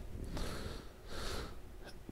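A man breathing in through his nose twice, soft hissing sniffs about half a second each.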